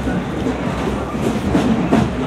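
Crowd noise: many people talking at once over a steady low rumble, with no instrument playing.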